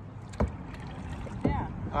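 Kayak out on open water: a steady low rumble of water and wind around the boat. There is one sharp knock about half a second in, and a brief voice near the end.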